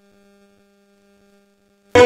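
Faint, steady electrical hum: a low tone with a few higher overtones and no music over it. Loud band music with singing cuts back in abruptly near the end.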